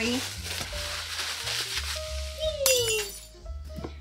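Clear plastic wrapping crinkling and crackling as it is pulled and torn off a cardboard box, with a sharp crackle about two-thirds of the way in.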